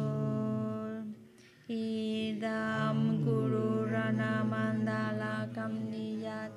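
Slow Tibetan Buddhist prayer chanting, with long held notes and gentle glides in pitch. There is a short break for breath about a second in, then the chant resumes.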